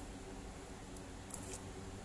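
Steady low background hum, with a brief crackling rustle of hands handling crochet yarn against a plastic sheet about one and a half seconds in.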